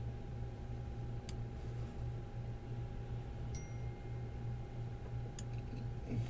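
Steady low electrical hum with a faint higher steady tone, broken by two soft computer mouse clicks, one about a second in and one near the end, and a brief faint high beep about halfway through.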